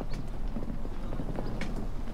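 Irregular light clacking and knocking on stone paving: footsteps, with a wheeled suitcase being brought out through a doorway.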